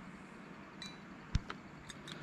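A few faint clicks and small taps from fingers handling thin cable wires and small tools on a workbench, with one sharper tap about a second and a third in.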